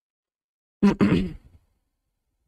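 A man's short wordless vocal sound a little under a second in, in two quick parts and fading within about a second, with dead silence around it.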